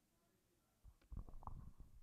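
Near silence, with faint low rumbling and soft thumps beginning about a second in.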